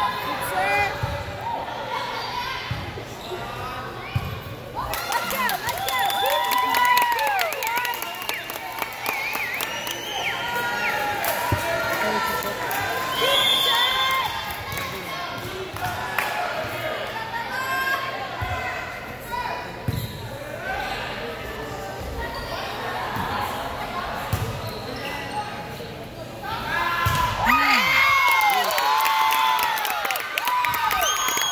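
Volleyball play on a hardwood gym floor: many short sneaker squeaks, the slaps of the ball being hit, and voices echoing in the hall. The squeaking and voices pick up near the end.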